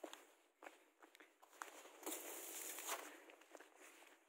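Footsteps crunching through fresh snow: a run of short crunches about every half second, then a longer, louder stretch of crunching about two seconds in.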